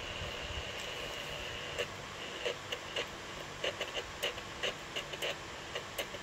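Homemade Tesla-coil driver and resonator setup running under load: a faint steady high-pitched whine with scattered irregular clicks and crackles.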